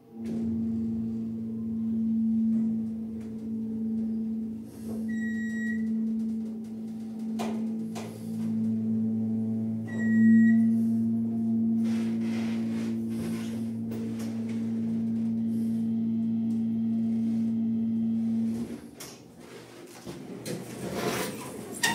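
Passenger elevator in motion: its drive hums steadily and low, starting as the car sets off and stopping shortly before the end as it arrives. Two short high beeps sound about five seconds apart, the elevator's floor signal.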